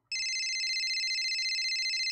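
Telephone ring as a call is placed: one electronic ring with a fast flutter, about two seconds long, that cuts off suddenly.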